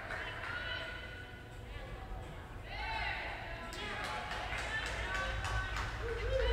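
Indistinct voices echoing in a large indoor hall, with a run of light knocks in the second half.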